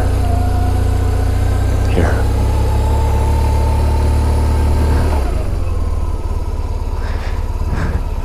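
Motorcycle engine running at low speed with a heavy low rumble, easing off about five seconds in as the bike slows to a stop.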